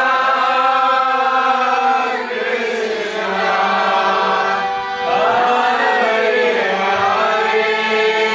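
Kirtan chanting: a group of voices singing a devotional chant together in long, held notes, with the pitch moving about a second in and again about five seconds in.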